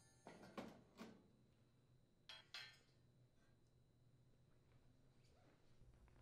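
Faint knocks and clinks of cast-iron range grates being lifted off a gas cooktop: three in the first second, then two more about two and a half seconds in, otherwise near silence.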